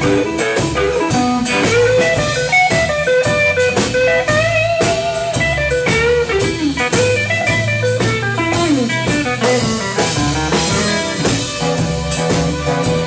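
Live blues band playing an instrumental passage: an amplified harmonica lead with bending notes over electric guitar, bass guitar and drums.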